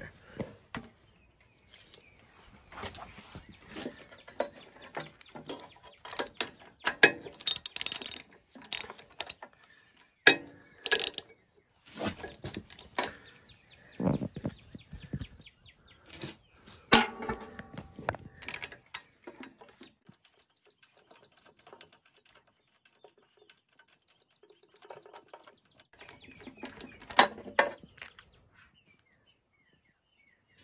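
Socket ratchet clicking and metal tool clatter while spark plugs are worked loose and pulled from a lawn mower engine. The sound comes in bursts of sharp clicks through the first twenty seconds, goes mostly quiet, then returns in another burst near the end.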